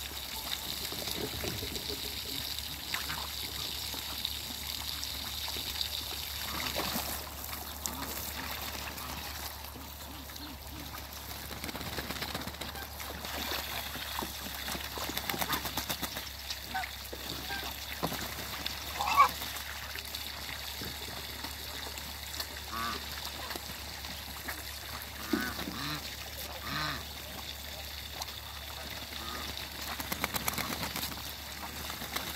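Muscovy ducks splashing and bathing in a hose-fed puddle, with water trickling throughout. Scattered short honks and calls from geese and ducks break in, the loudest about two-thirds through.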